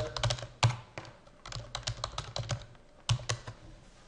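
Computer keyboard being typed on: quick, irregular keystroke clicks in short runs with brief pauses between them, as login details are entered.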